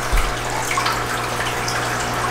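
Steady splashing of running water, typical of an aquarium filter's outflow, with a low steady hum beneath it. There is a brief low bump just after the start.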